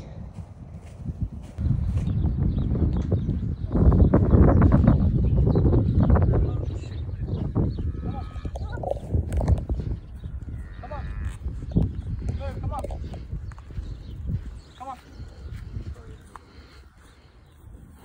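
Goats bleating several times in the second half, short wavering calls. Before them, a louder low rumbling noise fills the first few seconds.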